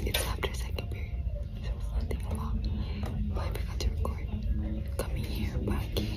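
A young woman whispering, over a steady low background noise.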